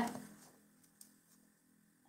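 Near silence: room tone with a faint low hum, and one faint click about a second in.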